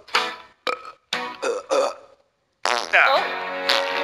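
Several short strained burps in quick succession, then a brief pause, and music with voices comes in about two and a half seconds in.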